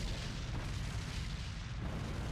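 Explosion at sea, heard as a deep, steady rumble as a blast throws up a large plume of water. The higher frequencies swell again near the end.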